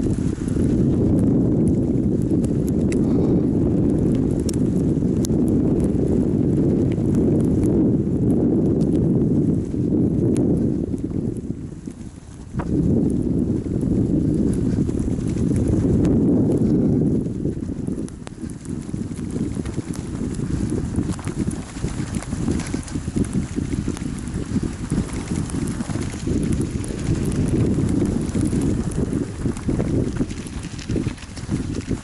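Bicycle riding through fresh, unpacked snow: tyres crunching and rumbling over the snow, with wind rumble on the microphone. The sound drops briefly about twelve seconds in, and in the last third turns choppier, with uneven crunching and knocks.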